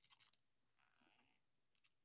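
Near silence: room tone, with a few faint ticks just after the start.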